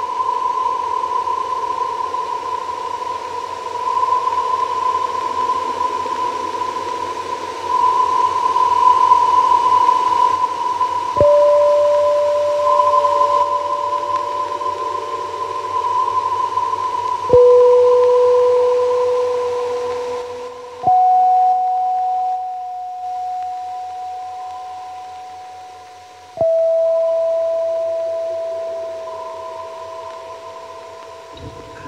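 Experimental ambient music: a steady high drone with hiss under it, joined by four struck tones at different pitches, each starting sharply and dying away slowly.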